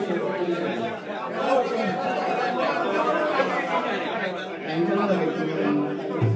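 Many people talking at once in a hall, with a thin steady held note underneath for a couple of seconds in the middle.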